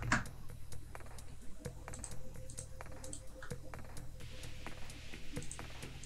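Computer keyboard typing: scattered light key clicks as values are typed in and entered with the Return key.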